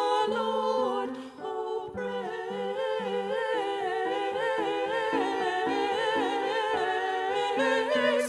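Small group of women singing a slow sacred choral piece, holding notes with vibrato over steady low accompanying notes that step from pitch to pitch, with a brief pause for breath between phrases about a second and a half in.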